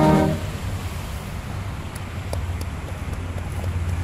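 Military brass band holding a chord that cuts off about a third of a second in, followed by a steady low rumble of outdoor background noise with a few faint clicks.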